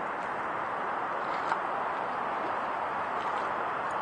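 Steady rushing outdoor background noise with no distinct event, and a faint tick about one and a half seconds in.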